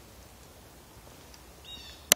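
Faint outdoor woodland ambience, with one short, high bird call near the end.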